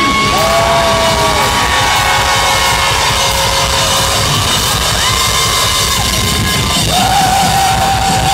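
Punk rock band playing live and loud, drums and distorted guitar under long held high notes, with the singer yelling into the microphone.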